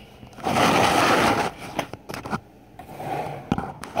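Handling noise from a phone camera being picked up and moved on a table: a rough scraping rub lasting about a second, then a few light clicks and knocks.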